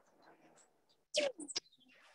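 Soundtrack of an action-movie clip played through a video call's screen share: low, scattered sounds, a short loud burst about a second in, then a falling whistle-like tone near the end.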